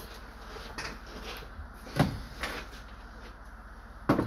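A few light taps and clicks of a tool prodding an LED on an aluminium-backed circuit board to feel whether its solder has melted, the loudest about two seconds in, over a faint steady hum.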